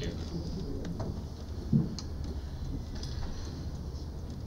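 Meeting-room tone with a steady low hum, a short low voice-like "hm" a little under halfway through, and a couple of faint clicks.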